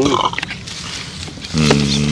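A man's voice: after a short quiet stretch, a single drawn-out wordless 'mm' or 'eo' sound starts about one and a half seconds in and holds steady for about a second.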